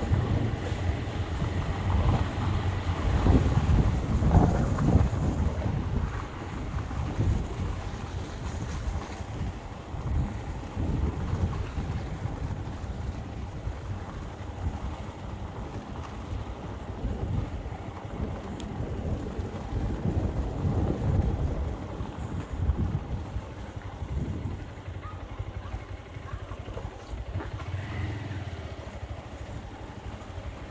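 Wind buffeting the microphone of a moving vehicle, over a low rumble of road noise. It is louder for the first few seconds, then settles and eases somewhat.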